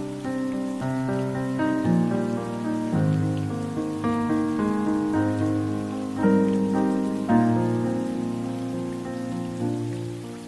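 Slow, gentle instrumental music of held chords, changing about once a second, over a steady hiss of rain.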